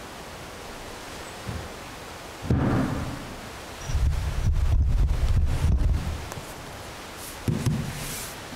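Handling noise on the ambo microphone as a book is set down and arranged on the lectern: a thump about two and a half seconds in, a low rumble for about two seconds from about four seconds in, and another thump near the end, over a steady hiss.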